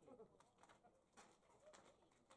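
Near silence of an outdoor ballpark: a faint murmur of distant voices just after the start and a few soft ticks.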